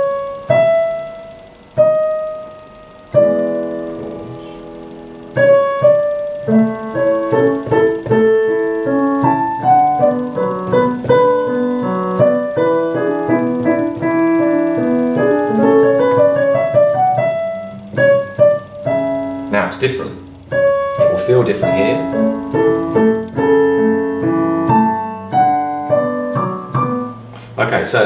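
Roland digital piano played with both hands: a few separate notes, then, from about three seconds in, chords and running passages, with a rising scale-like run in the middle.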